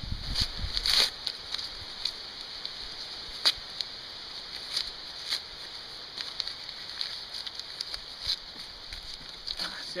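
Paper mailing envelope being torn open by hand: scattered rips and rustles, the sharpest about a second in and again about three and a half seconds in, over a steady high hiss.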